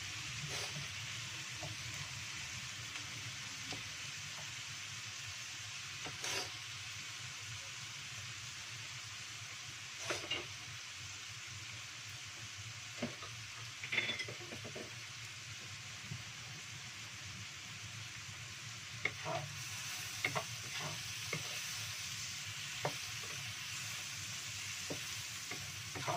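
Green chilies and garlic sizzling steadily in hot oil in a wok, with scattered knocks and scrapes of a wooden spatula against the pan, more of them near the end.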